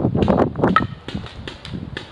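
Paintball markers firing: an irregular string of sharp pops, about eight or nine in two seconds, as the game's last exchanges of shots go on.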